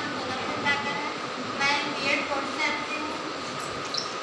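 A woman's voice through a microphone and PA system, echoing in a large hall, over a steady background hiss.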